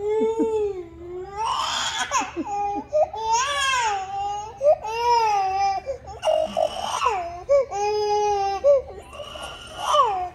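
Baby crying in a string of wailing sobs, about one cry a second, each wavering in pitch with a short catch of breath between: an upset cry at being told no.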